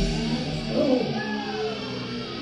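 Live rock band playing, with a lead line that slides up and down in pitch over the band.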